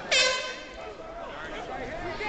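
A sudden, loud horn-like blast about a tenth of a second in, held for about half a second and then fading, over the chatter of voices around the ring.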